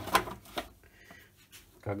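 A short knock, then a fainter one, as a silicone mould half is handled and set down on a workbench.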